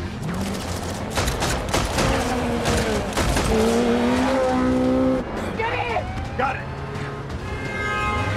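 Action-film chase sound mix: a rapid run of gunshots and breaking glass in the first couple of seconds, then motorcycle engines revving, rising in pitch, over the steady sound of a car speeding on the road.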